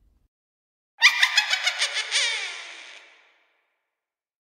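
A sudden burst of high-pitched laughter, a quick run of about eight laugh pulses starting about a second in, sliding down in pitch as it fades away over the next two seconds.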